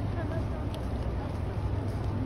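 Murmur of a crowd walking across an open courtyard, with faint distant voices, over a steady low rumble of wind on the microphone.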